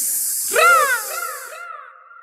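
A caw, as of a crow, about half a second in, repeating three or four times as fading echoes, over a hiss that dies away.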